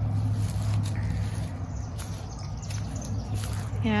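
A steady low hum, with faint outdoor background noise around it.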